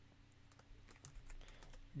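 Faint keystrokes on a computer keyboard as a few characters are typed, over a low steady hum.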